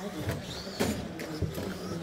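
Electric RC stock trucks running in a race, their motors whining up and down with the throttle, with a few sharp clicks.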